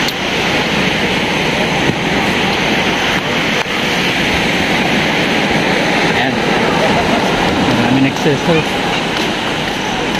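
Steady rush of breaking ocean surf mixed with sea wind buffeting the microphone, loud and even throughout.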